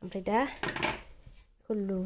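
Brief clatter of metal kitchenware, a few quick knocks lasting about half a second, starting about half a second in.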